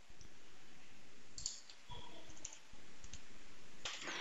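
A few faint, scattered computer mouse clicks over a low, steady background.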